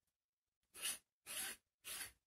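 Palette knife scraping thick acrylic paint across a painting: three short scraping strokes, about two a second, after a silent start.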